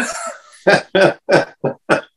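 A man laughing: a breathy exhale, then a run of five short bursts of laughter, about three a second.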